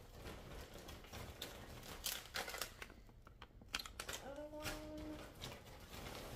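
Plastic grocery packaging and bags rustling and crinkling in short, irregular bursts as items are handled and pulled out. A brief, steady hummed voice sound comes in about four seconds in.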